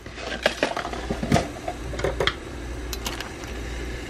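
Soup boiling in an open rice cooker pot: irregular bubbling pops and clicks over a steady low rumble.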